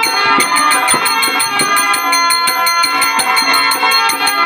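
Live folk-theatre music: a harmonium holds steady chords under fast, even metallic jingling strikes, about seven a second.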